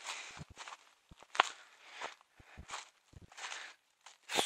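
Footsteps crunching and rustling through dry fallen leaves on a forest path, a run of irregular steps with one sharper snap about one and a half seconds in.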